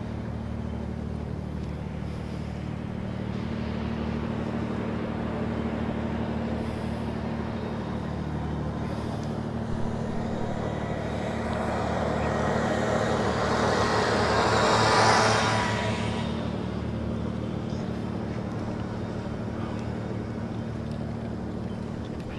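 Steady low engine hum. Partway through, a vehicle passes close by, growing louder to a peak and then fading.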